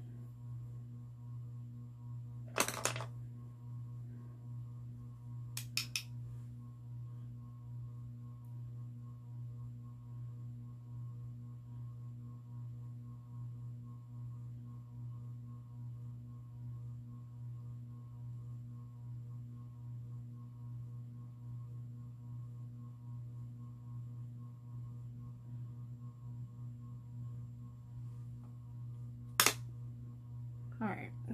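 A steady low electrical hum. A few sharp clicks break through it: one about three seconds in, a quick cluster of two or three about six seconds in, and one more near the end.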